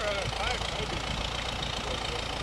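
Excavator engine idling steadily under a haze of wind noise on the microphone, with a faint voice briefly near the start.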